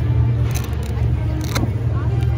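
A steady low hum with faint voices of a crowd behind it and a couple of soft clicks.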